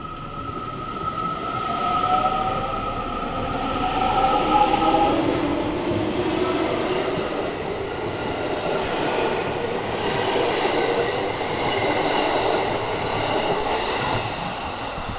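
JR West 207 series electric train pulling away from a standstill. Its traction motors whine, the pitch rising in steps over the first few seconds as it accelerates. Then comes a steady rumble of wheels on rail as the cars roll past.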